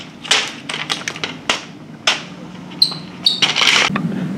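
Handling noise: a run of short scrapes and rustles as a sheet of paper is carried, with two brief high squeaks about three seconds in and a longer rustle near the end.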